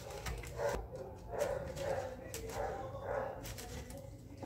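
A table knife scraping and rubbing around the inside wall of an aluminium cake pan against its parchment-paper lining, with a few light clicks where the blade touches the metal.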